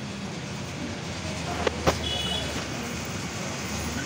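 Background noise of a crowded hall, a steady low hum with faint murmur of voices, broken by two sharp clicks close together about halfway through.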